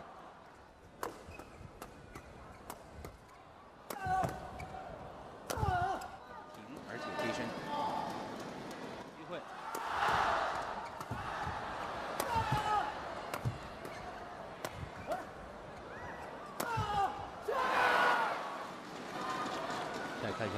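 Badminton rally on an indoor court: sharp cracks of rackets striking the shuttlecock and squeaks of shoes on the court, with the crowd cheering and shouting in two swells, about ten seconds in and near the end.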